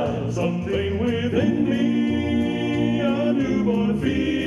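Men's gospel vocal quartet singing in close harmony, holding a long chord through the middle.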